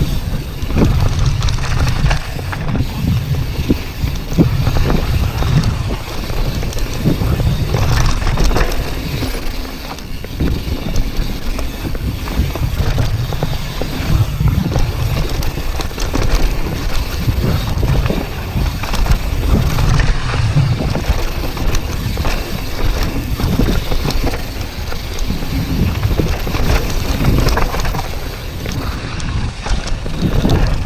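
2018 YT Tues carbon downhill mountain bike descending a dirt and rock trail at speed: continuous tyre rumble on dirt with a constant clatter of chain and suspension knocks over the bumps, and wind on the action camera's microphone.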